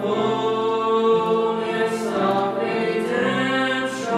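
A young woman and a young man singing a hymn as a duet, in long held notes that move from pitch to pitch.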